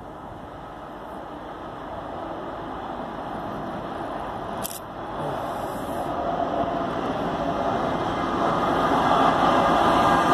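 Norfolk Southern diesel freight locomotives approaching and starting to pass close by, their engine and rail noise growing steadily louder. A single sharp click about halfway through.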